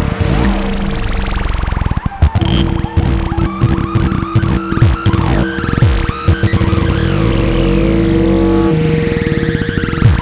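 A 1978 Serge Paperface modular synthesizer playing an improvised patch of dense electronic sound: choppy pulses and fast sweeping glides over low drones. A steady held tone enters about two seconds in and drops out near the end.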